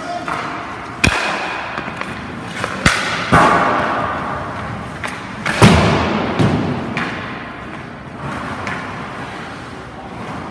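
Ice hockey practice sounds: several sharp cracks of a stick shooting a puck and the puck striking, about a second in, around three seconds in and loudest at about five and a half seconds, each ringing on in the rink's echo. Skates scrape and carve the ice between the hits.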